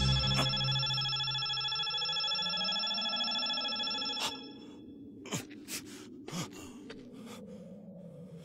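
A sustained, shimmering hum of a cartoon energy sound effect, the glow of a healing power, that fades and stops about four seconds in. A few short clicks and pops follow, quieter.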